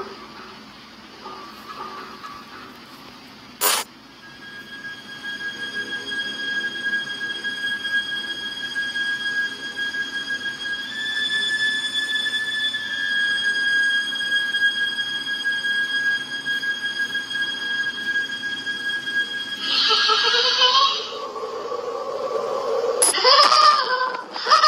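A steady high-pitched tone with overtones, holding one pitch and rising slightly for a couple of seconds midway. There is a sharp click about four seconds in, and a louder burst of noise near the end.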